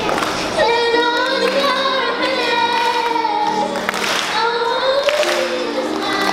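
A young girl singing a slow melody into a microphone, holding long notes, over steady instrumental accompaniment.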